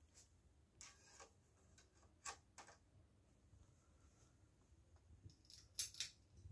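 A few sharp clicks and light handling noise as a DVD disc is loaded into a DVD player, the loudest click coming near the end.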